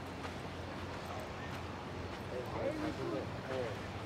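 People talking indistinctly, mostly in the second half, over a steady low background rumble.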